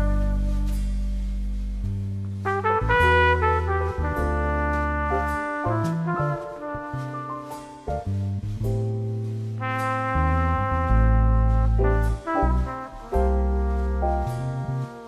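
Slow, jazz-tinged orchestral music: a trumpet plays the melody over deep, held bass notes.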